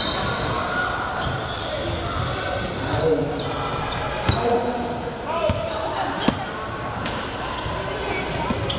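Basketball bouncing on a hardwood gym floor during play, a few sharp thuds standing out, the loudest a little past six seconds in, over a steady murmur of voices echoing in a large gym.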